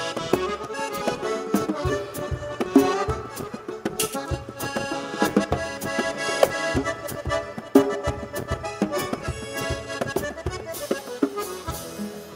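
Live chamamé instrumental: a button accordion plays the lead melody over guitarrón and percussion, with frequent sharp drum and cymbal hits.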